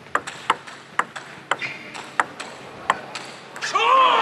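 Celluloid-style plastic table tennis ball ticking sharply off the players' bats and the table in a fast rally, about two hits a second at an uneven pace. A man's commentating voice comes in loudly near the end.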